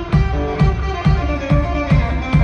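Live blues on an amplified cigar box guitar, playing held, ringing notes over a kick drum beating steadily about twice a second.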